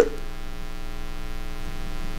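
Steady electrical mains hum, a stack of even buzzing tones, with no other sound over it.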